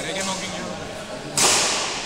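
A single sharp crack about one and a half seconds in, with a short hiss dying away in the hall's echo, typical of a badminton racket striking a shuttlecock hard. Voices murmur in the background.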